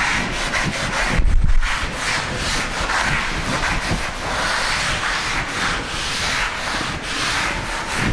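Repeated scratchy rubbing strokes on a writing surface, each lasting about a second, with a louder bump about a second in.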